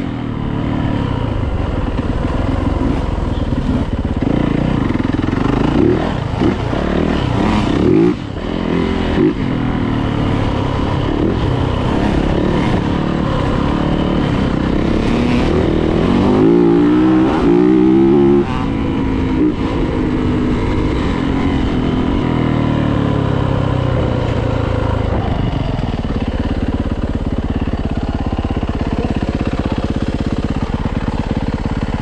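Yamaha YZ450F four-stroke single-cylinder dirt bike engine running under load on a trail ride, its pitch rising and falling with the throttle. A run of quick revs comes about 16 to 18 seconds in.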